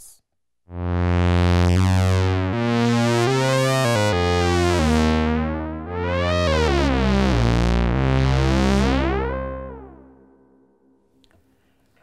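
Moog Grandmother analog synthesizer with oscillator sync on, playing a series of low notes while the synced oscillator's frequency is swept up and down, so the bright, metallic overtones rise and fall in arching sweeps. The sound starts just under a second in and fades out about ten seconds in.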